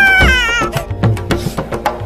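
A high, wavering cry lasting under a second, falling in pitch as it ends, over background music with a steady percussive beat.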